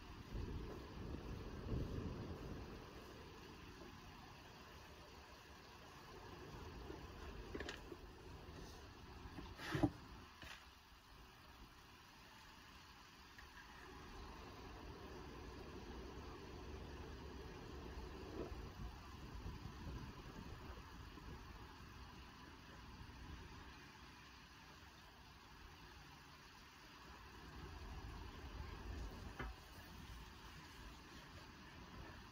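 Small lead-welding gas torch flame running faintly as a lead pipe is welded to its lead base, with a brief sharp tap about ten seconds in.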